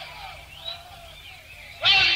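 A lull in a live dancehall sound-system recording: faint voices, then the loud music and voice come back in abruptly near the end.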